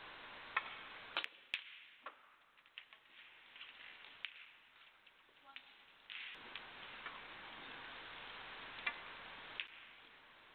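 Snooker balls clicking: a cue tip strikes the cue ball and the balls knock together. There are a few sharp clicks in the first two seconds, then scattered lighter clicks later over a faint steady hiss.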